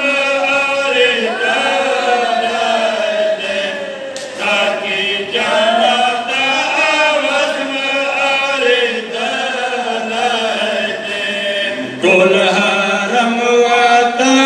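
Men's voices chanting a Pashto noha, a Shia mourning lament, together in a slow, wavering melody. The chant dips briefly about four seconds in and comes back louder about twelve seconds in.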